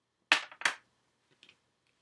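Two sharp clicks about a third of a second apart, followed by a few fainter clicks about a second later.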